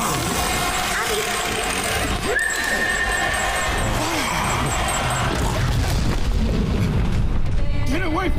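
Animated episode's soundtrack: music over continuous low rumbling sound effects, with a high held note from about two and a half to five and a half seconds in.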